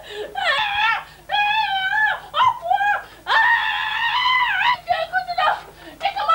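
A child screaming in a series of about five high-pitched cries, the longest about one and a half seconds, near the middle.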